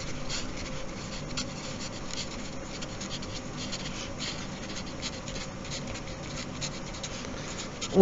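Sharpie permanent marker writing on paper: a quiet run of short, irregular felt-tip strokes as letters are written.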